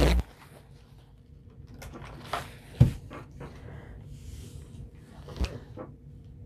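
Paper towel rustling and a few light knocks as a steam iron is picked up and set down on a padded ironing table, the sharpest knock a little before the middle.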